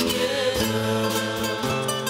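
A church music group playing: strummed acoustic guitars with a voice singing along.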